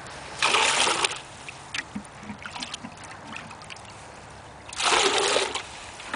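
Black plastic bucket being dipped into a shallow stream to scoop water, with two short splashes about four seconds apart.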